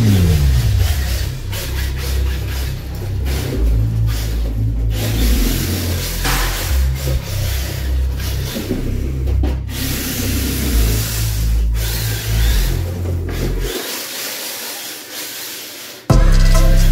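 HSP Flying Fish 1/10-scale brushed RC drift car running on a tile floor, its tyres scrubbing and sliding in a steady hiss that cuts out briefly a few times. The sound fades toward the end.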